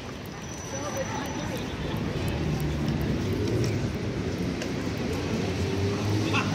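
Busy city street: a motor vehicle's low engine rumble grows louder from about two seconds in, with passers-by's voices in the background.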